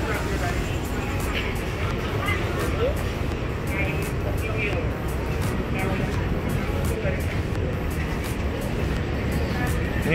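Outdoor street ambience: a steady low rumble with faint background chatter and snatches of music.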